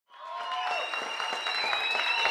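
Audience applauding, with cheering voices held over the clapping; it fades in at the very start.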